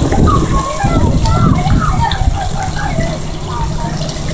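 Water running and splashing in a children's splash pool, with children's voices calling in the background over a steady low rumble.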